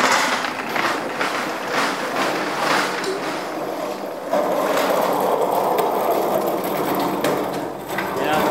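A metal hospital trolley rattling steadily as it is wheeled across the floor, starting about halfway through, after some irregular clattering.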